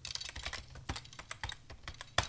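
Fast typing on a computer keyboard: a quick, irregular run of key clicks.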